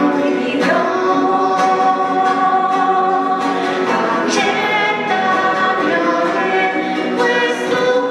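A man and a woman singing a hymn together into microphones, accompanied by a strummed acoustic guitar.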